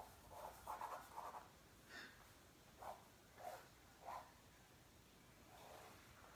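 Faint scratching of hurried drawing strokes on paper: a quick run of strokes at first, then four or five separate strokes spaced about half a second to a second apart.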